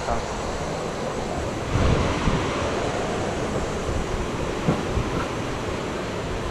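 Steady rushing of a fast-flowing stream, with some wind on the microphone. A brief low buffet comes about two seconds in, and a single sharp tick about three-quarters of the way through.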